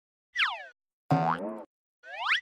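Cartoon sound effects of an animated logo intro: a quick falling whistle, then a springy boing about a second in.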